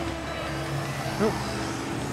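Steady low hum of a running motor vehicle, with a brief faint voice in the background about a second in.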